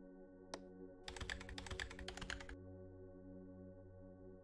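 Computer keyboard typing: one click, then a quick run of keystrokes lasting about a second and a half, faint under quiet ambient background music.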